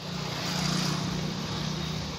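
Motor vehicle engine hum with road noise, swelling early on and easing a little toward the end.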